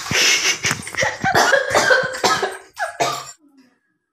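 A woman coughing in a rapid, irregular run of loud coughs, stopping a little over three seconds in.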